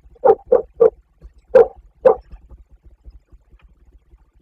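Five short, loud animal calls like barks: three in quick succession, then two more about a second later.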